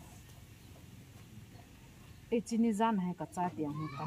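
A woman's voice speaking, starting after about two seconds of low background.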